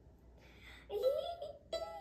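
A young girl singing the start of a short song that names the violin's strings, plucking her violin's open strings along with it. The first second is quiet; her first sung note slides upward, and a second note begins with a sharp pluck.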